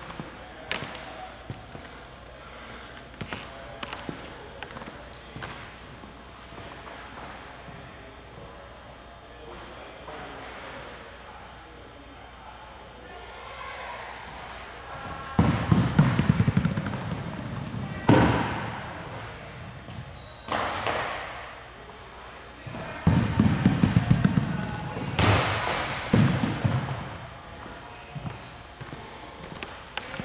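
Dimpled plastic softballs rolling along the floor and knocking over plastic-cup bowling pins: a quiet first half with faint scattered clicks, then two loud bouts about halfway and three-quarters through, each a low rumble broken by sharp knocks and clattering.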